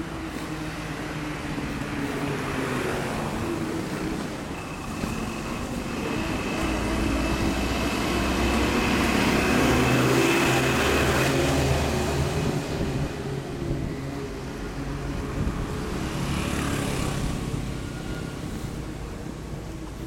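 Cars driving past on the road one after another, the loudest pass building up and peaking about halfway through with a thin high whine over it, and another car passing near the end.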